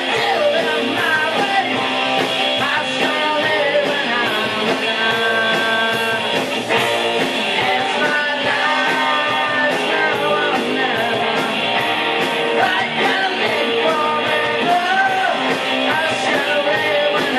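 Rock band playing live: electric guitar, bass and drums at a loud, steady level.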